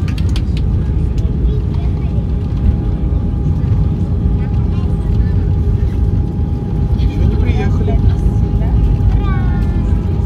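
Airbus A320 cabin noise during the landing rollout: a loud, steady low rumble from the engines and the wheels on the runway, with a steady hum over it. Voices are heard near the end.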